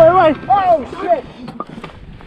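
Three short cries from a man, each rising and falling in pitch, in the first second or so, over clicking and rattling from a mountain bike on rocky ground.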